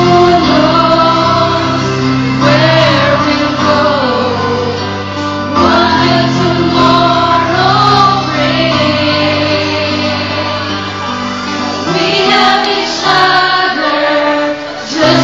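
A small group of voices, mostly women's, singing a song together in unison over a chordal accompaniment, in phrases a few seconds long.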